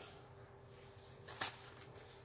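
Faint handling of a curled diamond-painting canvas under its plastic cover film as it is pressed flat, with a single short tick about one and a half seconds in over a faint steady hum.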